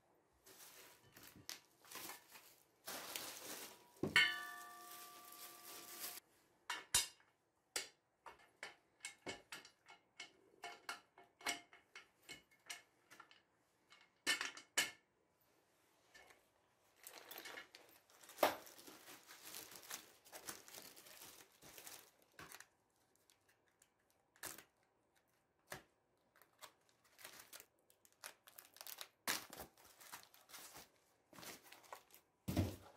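Office-chair parts being unpacked and handled: plastic wrapping and packing foam rustling and tearing, with scattered clicks and knocks as parts are moved. A metal part gives one short ringing clink about four seconds in.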